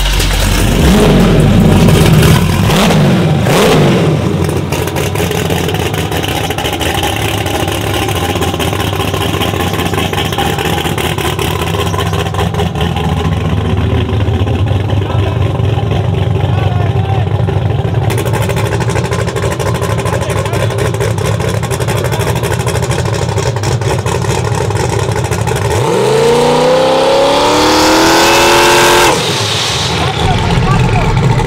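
Twin-turbo LSX V8 of a drag-race Chevy Silverado running at idle, revved briefly a couple of times a few seconds in. Near the end it revs up in one rising sweep lasting about three seconds, then cuts off sharply.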